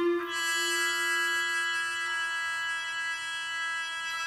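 A muted trumpet and a chamber ensemble hold a sustained chord of several steady pitches, with a soft new entry just after the start.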